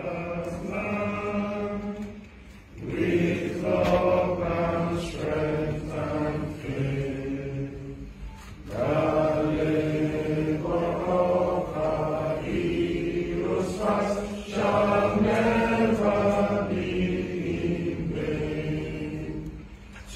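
Many voices singing together in unison: a slow song of held notes, sung in phrases with short breaks.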